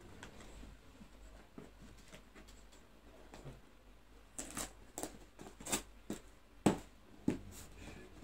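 A small cardboard box being opened by hand: faint handling at first, then from about four seconds in a quick run of sharp scrapes and rips as its flaps are pried and torn open, the sharpest near the end.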